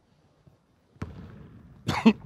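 Near silence, then a single sharp knock about a second in, followed by the steady low hum of a large gymnasium.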